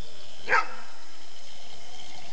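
A dog barks once, a single short bark about half a second in.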